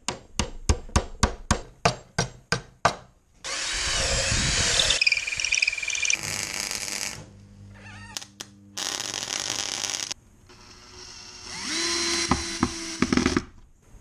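Workshop work in quick succession: a fast run of about a dozen sharp strikes, about four a second, then a cordless drill boring through a steel strip into wood with a whine. Later there is a burst of steady welding crackle, and near the end another power-tool run that rises in pitch.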